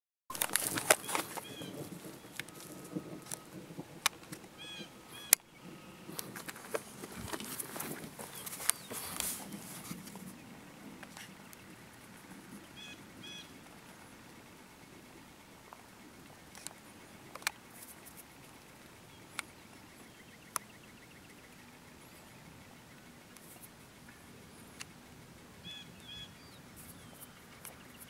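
Open-air ambience: rustling and sharp knocks from the camera being handled for about the first ten seconds, then a quieter stretch with a few isolated clicks. Short paired bird chirps come now and then throughout.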